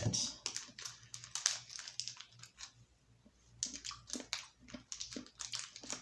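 Small plastic candy packet crinkling and crackling as it is handled and opened, in short irregular bursts with a pause about halfway through.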